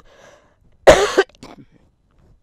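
A woman coughing once, sharply, about a second in, followed by a brief faint catch of breath.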